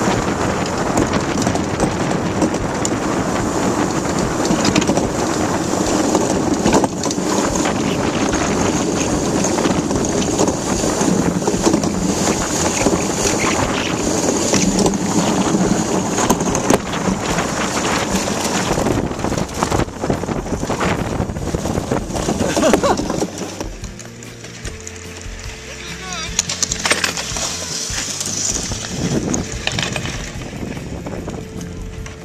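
Wind rushing over the microphone and the steel runners of a DN ice yacht hissing and rattling over lake ice at speed. About three quarters of the way through, the rush drops away to a quieter, thinner sound with a faint steady tone.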